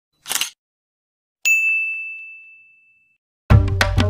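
Subscribe-button animation sound effects: a brief click, then a single bright bell ding that rings out and fades over about a second and a half.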